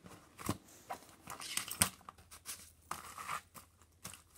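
Pages, plastic sheet protectors and folders in a ring binder being flipped and handled: a string of paper rustles and sharp clicks.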